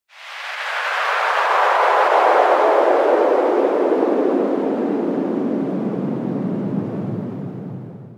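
An intro whoosh sound effect: a long swell of noise that comes in fast, then slowly sinks in pitch and fades away over about eight seconds.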